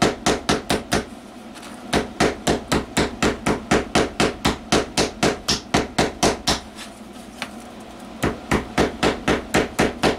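Small ball-peen hammer lightly tapping the rolled-over rim of a can-type electrolytic capacitor's metal can, crimping it back to lock it in place. The taps come quick and even, about four a second, stopping briefly about a second and a half in and again around seven seconds.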